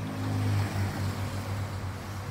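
A moving car's engine and road noise: a steady low hum under an even hiss.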